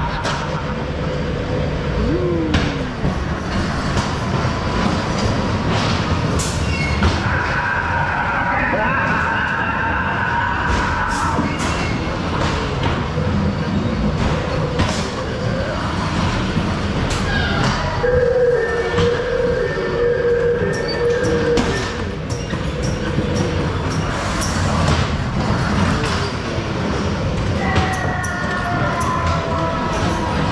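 Ghost train car running along its track through the ride: a steady rumble broken by many short clacks and knocks. Held tones from other sources come in twice, about 8 and 18 seconds in.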